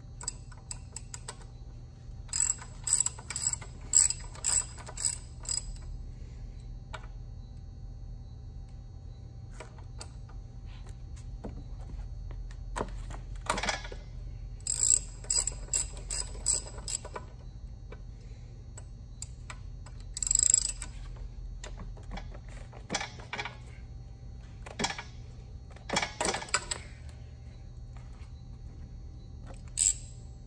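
Ratchet wrench clicking in quick runs as it turns the valve caps loose on an air compressor pump head. The longest runs come about two seconds in and again about halfway through, with shorter bursts later.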